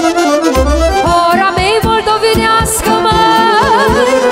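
Live band playing a Moldovan hora: instrumental Romanian folk dance music, a melody line over bass notes and a steady drum beat.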